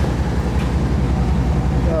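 Steady low mechanical rumble with a fast, even pulse, running unbroken.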